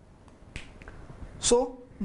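A short, sharp click about half a second in, then a man saying 'so'.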